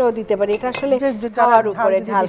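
Women talking at a kitchen counter, with a clink of dishes a little under a second in.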